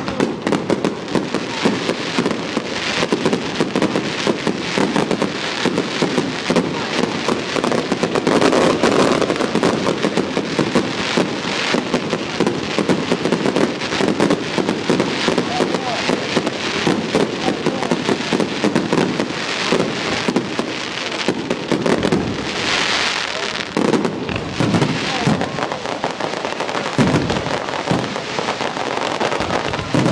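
Fireworks display: a loud, continuous barrage of bangs and crackling, many reports a second with no pause.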